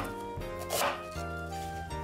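Chef's knife slicing through an onion and tapping a wooden cutting board: one stroke right at the start and another just under a second in, over steady background music.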